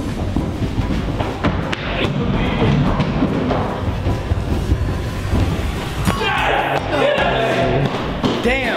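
Footsteps thudding quickly on carpeted stairs as two people run up and down them, over background music.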